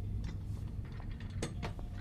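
A steady low hum with scattered light clicks and ticks, the strongest about one and a half seconds in.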